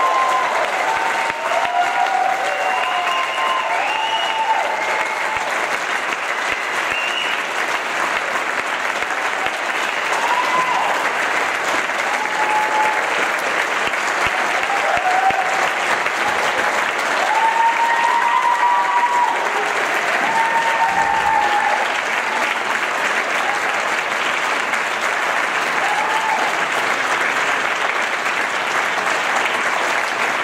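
Audience applauding steadily, with scattered whoops and cheers over the first two-thirds.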